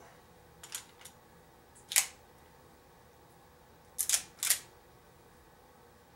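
Mechanical clicks of an M1911-style pistol being loaded and worked: a couple of light clicks, a sharp click about two seconds in as the magazine goes home, then a quick run of clicks around four and a half seconds as the slide is racked.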